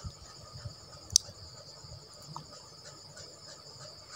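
Insects chirping steadily and shrilly in the background, with a single sharp click about a second in and faint rustling as fabric is handled.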